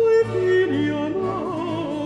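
Countertenor singing a Baroque opera aria with vibrato, accompanied by a period-instrument orchestra. A held note gives way to a short descending line about half a second in.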